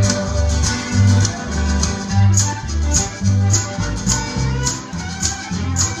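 Live string band playing an instrumental passage: acoustic guitar strumming and fiddle over an upright bass that alternates between two low notes about twice a second, in a steady country rhythm.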